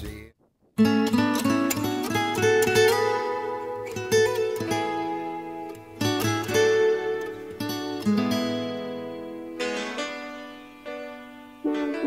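Background music: a previous song cuts off at the start, and after a short silence a plucked string instrument plays slow chords. Each chord is struck and left to ring, fading away over about two seconds before the next.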